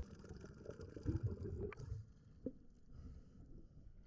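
Muffled, faint underwater ambience: water moving against a camera housing as a low, uneven rumble, with a short click about two and a half seconds in.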